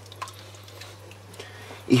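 Wooden spatula stirring a cream sauce in a wok: soft liquid sloshing with a few faint light taps, over a steady low hum.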